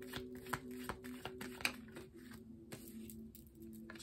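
Tarot deck being shuffled by hand: a quick run of soft card slaps and riffles, densest in the first couple of seconds and thinning out after. A faint steady hum runs underneath.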